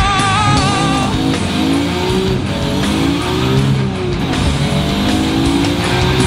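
Nissan Skyline R33 GT-R's RB26DETT twin-turbo straight-six, on a straight-piped exhaust, accelerating hard, its revs climbing in two rising sweeps with a gear change between. Rock music plays underneath.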